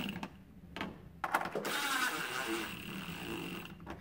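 A cordless drill driving a screw into the fridge's sheet-metal rear cover panel. A few brief clicks come first, then the drill runs steadily for about two and a half seconds and stops.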